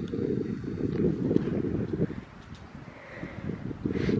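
Wind buffeting a phone microphone outdoors: a gusty low rumble, stronger for the first two seconds and then easing.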